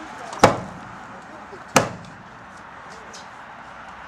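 Two loud, sharp blows of a hand demolition tool striking the house's wooden framing, about 1.3 seconds apart, each dying away quickly.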